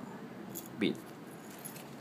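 Small metal ball chain jingling faintly with a few light clinks as it is handled.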